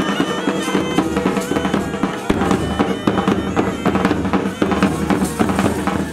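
Pipe band playing: bagpipes sounding a melody over their steady drones, with sharp side-drum and bass-drum beats throughout.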